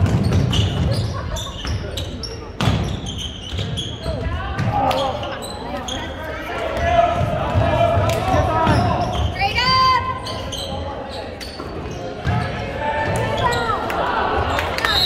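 A basketball being dribbled on a hardwood gym floor amid indistinct shouting from players and spectators, echoing in the gym. Sneaker squeaks come about ten seconds in.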